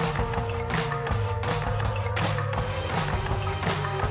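A live band plays an instrumental passage of an indie-pop song between sung lines. A steady beat lands about every three-quarters of a second, over a moving bass line and one held note.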